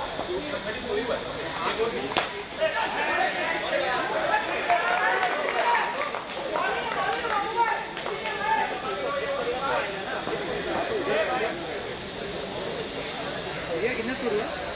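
Several voices talking and calling out over one another, with one sharp click about two seconds in.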